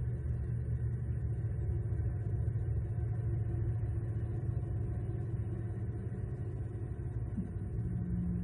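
A steady low rumble throughout, in the manner of a running engine, with a short rising tone near the end.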